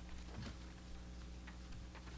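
A few faint footsteps on a hard floor, spaced about a second apart, over a low steady hum from the room's sound system.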